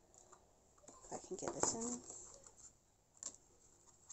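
Light clicks and taps of a plastic hole punch and laminated paper being handled and lined up, with a brief murmured voice about a second and a half in and one more click a little past three seconds.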